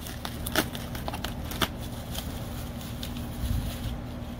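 Knife blade cutting and prying at a polystyrene foam packing insert: a few sharp cracks and clicks in the first second and a half, over a low steady rumble.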